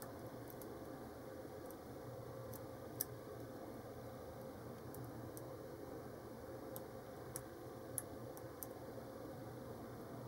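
Faint, sparse metallic clicks of a hook pick lifting pin stacks inside a brass Cocraft 400 padlock cylinder under tension, about half a dozen ticks with the clearest near three and eight seconds in, over a steady faint hum.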